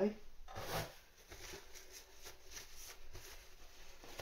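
Faint handling sounds of celery sticks being turned and set down on a glass chopping board: a brief rustle about half a second in, then light rubbing and small taps.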